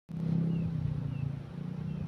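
A vehicle engine running steadily at idle, with three faint, short, high falling chirps over it.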